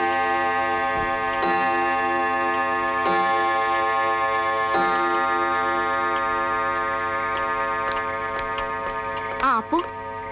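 A striking clock sounding four slow, ringing strokes about a second and a half apart, each tone swelling and then fading slowly, as a clock does when striking the hour.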